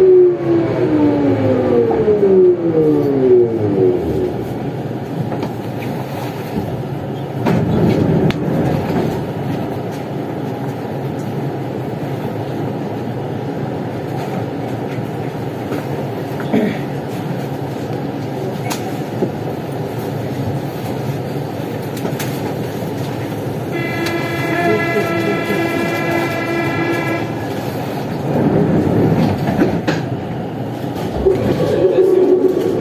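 Siemens VAL 208 NG metro train's electric traction drive whining down in pitch as the train brakes to a stop at an underground station, followed by a steady rumble while it stands at the platform. About 24 seconds in, a steady electronic tone of several pitches sounds for about three seconds.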